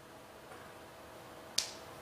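A single sharp click about one and a half seconds in, over a faint steady room hum.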